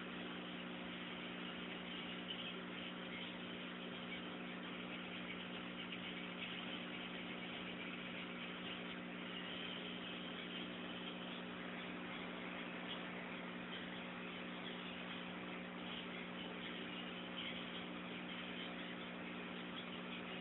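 A steady low hum made of several fixed tones, over an even hiss, unchanging throughout.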